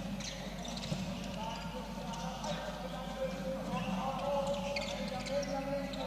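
Handball game sound on an indoor court: the ball bouncing and players' footsteps on the court floor, with players' and bench voices calling out.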